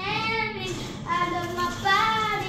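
A child singing in held notes that slide up and down in pitch, with short breaks between phrases.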